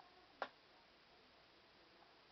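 A single short click about half a second in, against near silence.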